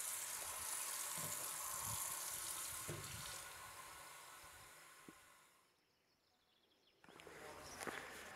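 Water running from a tap into a stainless-steel sink, a steady hiss that fades out about four to five seconds in, followed by near silence and a faint background hush near the end.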